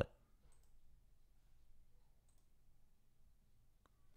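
Near silence: room tone with a few faint clicks of a computer mouse, about half a second in, a little past two seconds in and near the end.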